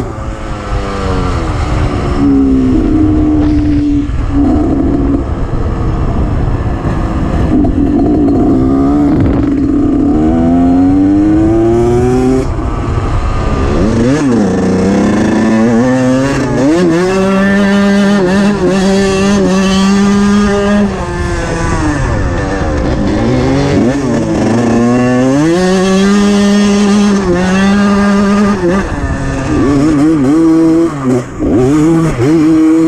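Two-stroke enduro motorcycle engine heard close up from the bike, revving up and down repeatedly as it is ridden through the gears, with a few stretches of held, steady revs in the second half. A low rushing noise runs underneath.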